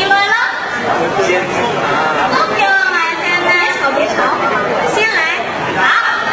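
Speech only: several people talking into stage microphones, their voices overlapping.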